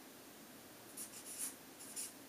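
Marker writing on flip-chart paper: quiet at first, then a few short scratchy strokes about a second in and again near the end.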